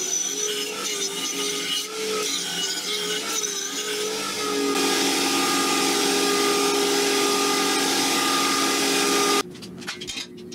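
Belt grinder running while a steel plate is ground on the belt, its hum wavering as the work is pressed on. After about five seconds it runs free with a steady tone, then the sound cuts off abruptly near the end.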